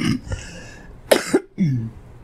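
A person coughing: a cough at the start and two quick coughs just past a second in, followed by a brief voiced sound falling in pitch.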